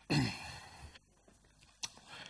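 A man's breathy exhale, like a sigh, lasting under a second, followed near the end by a single sharp click.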